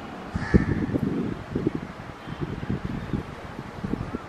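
A crow cawing once, about half a second in, over an irregular low rumble with thumps.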